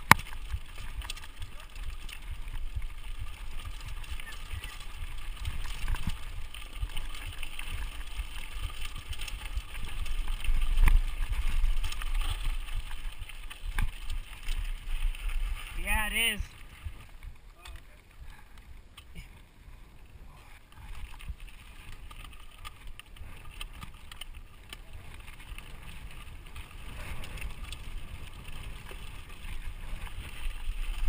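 Giant Reign full-suspension mountain bike ridden fast down a dirt singletrack: tyres rolling over dirt and loose rock with the bike rattling, and wind buffeting the microphone as a rough low rumble. A short, wavering high-pitched sound comes about sixteen seconds in, and the riding noise is quieter for the second half.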